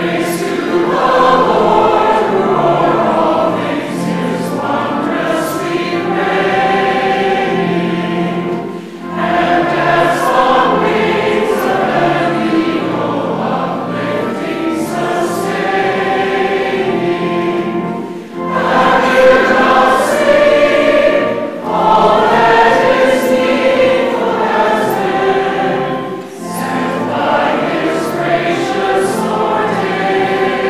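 Church congregation singing a hymn together in phrases, with short breaks between lines, accompanied by a pipe organ holding sustained low notes.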